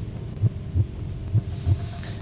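A heartbeat-style suspense sound effect: pairs of low thuds, about one pair a second, over a steady low droning hum. It builds tension before the verdict on a contestant is announced.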